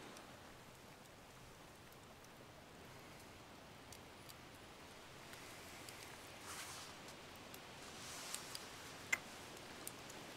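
Faint steady hiss with soft rustling that grows a little in the second half, and a few sharp little clicks, the loudest about nine seconds in.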